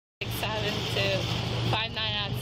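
Audio cuts in suddenly after dead silence, then a steady low hum of an idling vehicle engine, with voices talking over it.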